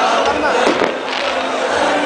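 Fireworks going off over a chattering crowd, with two sharp cracks close together a little under a second in.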